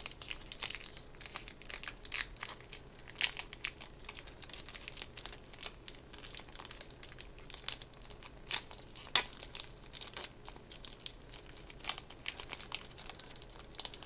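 Foil wrapper of a Magic: The Gathering booster pack crinkling and crackling irregularly as hands peel and tear it open, with one sharper crackle about nine seconds in.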